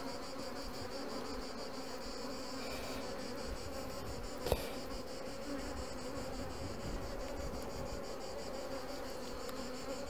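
Honeybees from an open hive buzzing in a steady hum. One short sharp click about four and a half seconds in.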